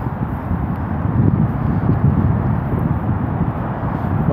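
Wind blowing across the microphone: a loud, uneven low rumble.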